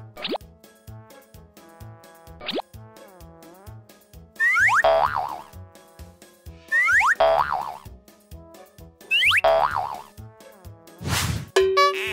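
Children's background music with a steady beat, overlaid with cartoon sound effects: two quick rising swoops in the first few seconds, then three loud falling tones about two and a half seconds apart, and a whoosh near the end. The effects mark parts popping onto a cartoon car as it is assembled.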